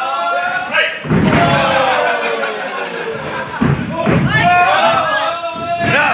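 Wrestlers landing on the wrestling ring's mat with heavy thuds, about a second in and again near four seconds, under people's voices.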